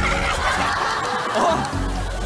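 A man and a woman laughing together with delight, over background music whose low bass comes in more strongly near the end.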